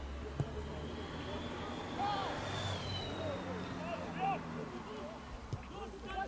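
Distant voices calling out across an outdoor football pitch, with a single thud of the ball being kicked about half a second in.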